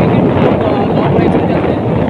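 Loud, steady wind noise buffeting the microphone of a camera moving with a cyclist at speed.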